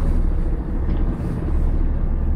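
Steady low rumble inside the cab of the BRO electric all-terrain vehicle as it reverses slowly over snow, driven by two electric motors, one per side. There is no diesel engine running, so what is heard is drivetrain and wheel noise.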